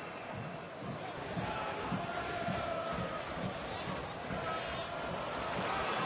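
Football stadium crowd noise: a steady murmur of many voices that swells slightly toward the end.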